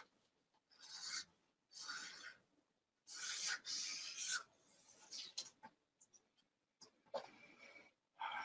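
Black marker drawn across paper in a series of short, faint strokes, about six in all, each around half a second long, with brief pauses between them.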